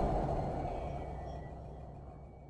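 The fading tail of an outro logo sting: a deep, reverberant sound dying away steadily.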